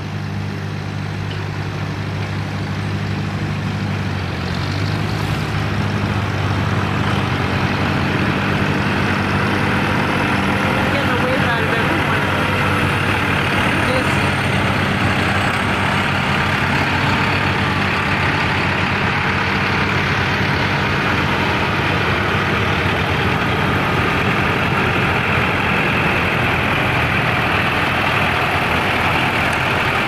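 Farm tractor engines running steadily as a parade of tractors drives past, a low engine note that grows louder over the first several seconds and then holds.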